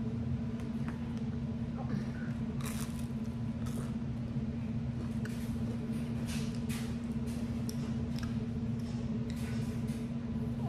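Crisp waffle being chewed, with short crunches every second or so from about a third of the way in, over a steady low hum.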